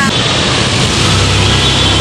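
Loud, steady vehicle noise: a low engine hum under a rushing haze.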